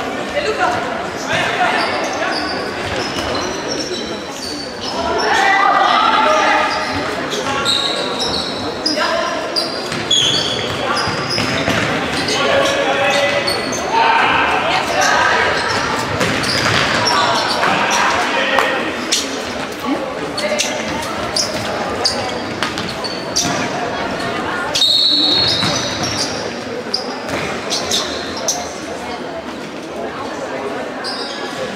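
Indoor football match in a reverberant sports hall: the ball thumping off feet and the floor, short high squeaks, and players and spectators shouting throughout. A short high referee's whistle sounds near the end.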